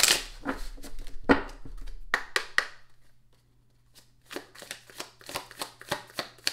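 A deck of oracle cards being shuffled and handled, a run of quick flicks and taps, with a short pause about three seconds in before the flicking starts again.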